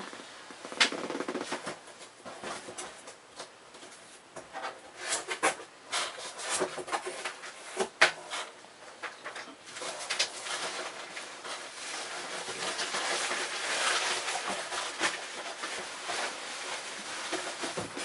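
Cardboard boxes being handled and shifted: scattered knocks and clicks, the loudest about eight seconds in, then a longer stretch of cardboard scraping and rustling in the second half.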